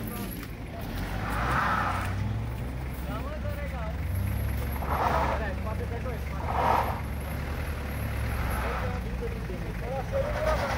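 A car engine running steadily, with people's voices around it and a few short rushing noises over it, about a second and a half in and twice more in the second half.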